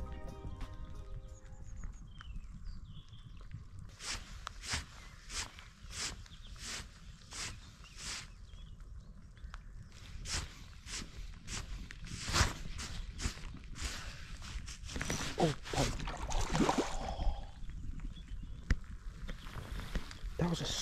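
Background music fading out in the first two seconds, then a spinning fishing reel being wound while a fish is played on the rod, giving a regular click about three times every two seconds. A louder, noisier stretch comes about three-quarters of the way through.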